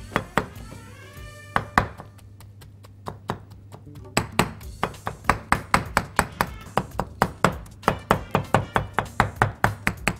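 Large kitchen knife chopping grilled aubergine on a bamboo cutting board, mincing it fine to cut its long fibres before mashing. A few separate strikes at first, then from about four seconds in a quick, even run of about three to four strikes a second.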